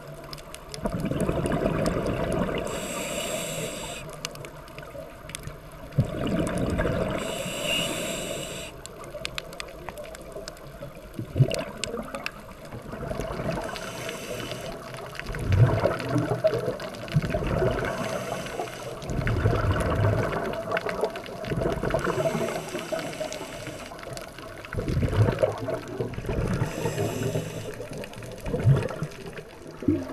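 Scuba diver breathing through a regulator underwater: a short hiss on each inhale, then a longer burst of rumbling exhaust bubbles on each exhale. The cycle repeats about every five to six seconds.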